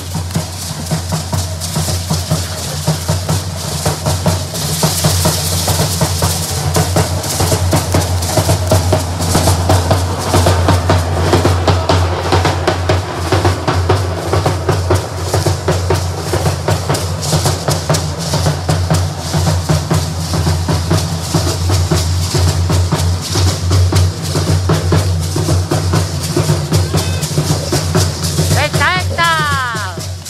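Two hand-carried bass drums (tamboras) beating a fast, steady rhythm for a danza de matachines.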